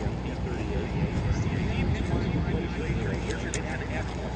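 Twin Allison V-12 engines of a P-38 Lightning droning steadily as it flies overhead, under a public-address announcer's voice.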